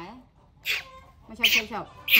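A baby monkey being bottle-fed lets out short, high, shrill cries, two of them about a second apart.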